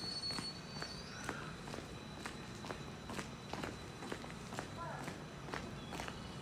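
Electric local train creeping slowly into a station platform with a low rumble, over which sharp clicks come about twice a second.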